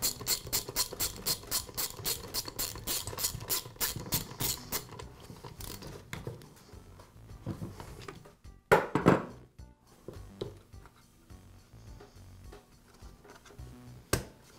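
A socket ratchet clicking steadily, about four to five clicks a second, as a spark plug is screwed into a trimmer engine's cylinder head. The clicking stops about five seconds in. A single loud thump comes near the middle, followed by light handling knocks.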